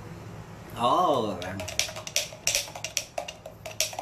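A man's short wordless vocal sound, rising and falling in pitch, about a second in, followed by a quick run of small sharp clicks and taps, and another brief vocal sound at the very end.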